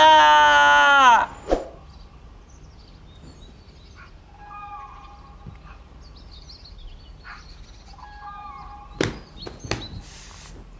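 A man's loud, drawn-out cry of delight, falling in pitch over about a second. Then faint birdsong for several seconds, and a few sharp thumps near the end.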